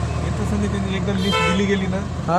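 Car engine idling, a steady low rumble heard from inside the cabin under muffled talking.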